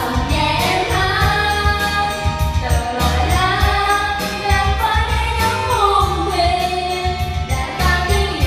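Two women singing karaoke into microphones over a backing track with a steady beat and bass, all played through the room's loudspeakers.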